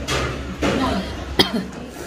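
A person coughing, with brief voices and one sharp click, the loudest sound, about one and a half seconds in.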